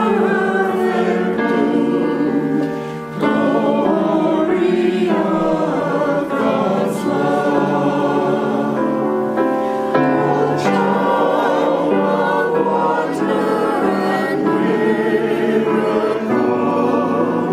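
Mixed-voice church choir singing an anthem, with a short break between phrases about three seconds in.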